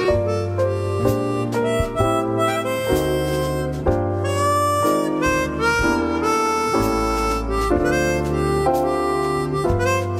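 Slow jazz ballad backing music: sustained chords over a steady bass line, with regular note attacks.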